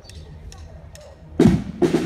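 Drums of a historical flag-throwers' band starting to play: after a quiet stretch, a loud drum strike about a second and a half in and another burst of drumming just before the end.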